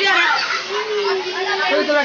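A group of children chattering and calling out over one another, with one voice drawn out in a long call about halfway through.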